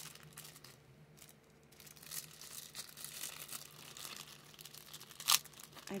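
Packaging rustling and crinkling as small items are handled and unwrapped, with one sharp click a little past five seconds in, the loudest sound.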